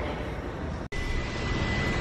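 Steady rushing background noise. It breaks off abruptly a little under a second in, then resumes a little louder with a thin, steady high tone running alongside.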